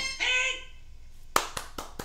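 A few sharp hand claps, quickly one after another, near the end, after the tail of a sung or voiced note fades out in the first half second.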